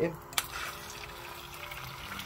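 Beaten egg poured from a bowl into an oiled non-stick frying pan: a faint steady wet hiss as the liquid spreads, with a light click about half a second in.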